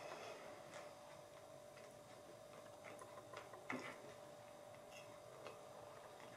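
Near silence: room tone with a faint steady hum and a few soft, irregular clicks, the clearest about three and a half seconds in.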